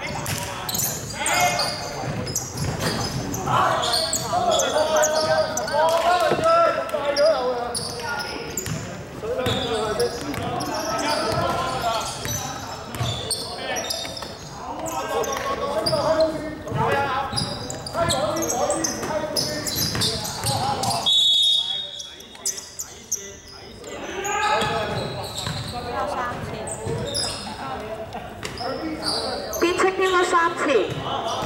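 A basketball being dribbled and bouncing on a hardwood gym floor amid players' calls and shouts, echoing in a large sports hall. A brief high whistle sounds about two-thirds of the way through, followed by a short lull.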